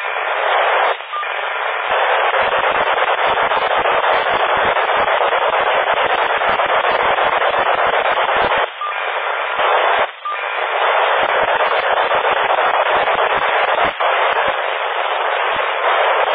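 FM radio static from a PMR 446 receiver: a loud, steady hiss in a narrow voice-radio band, with no voice on the channel. It is broken by a few brief drops, about a second in, twice near the middle, and once near the end.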